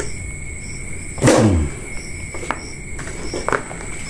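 A steady high insect trilling, with a short low voice sound falling in pitch about a second in and a few light clicks later on.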